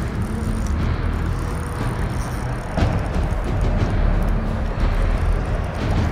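Steady rushing noise of river water around a wading angler, with a heavy low rumble throughout.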